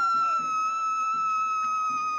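A person's long, high-pitched scream held on one steady note, sinking very slightly in pitch.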